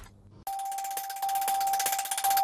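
News channel's logo sting: after a brief silence, a single steady chime-like tone comes in about half a second in and holds, with a fine glittering sparkle above it.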